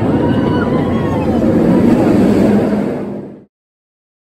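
Steel roller coaster train rumbling loudly along its track overhead, with faint voices over it; it cuts off abruptly about three and a half seconds in.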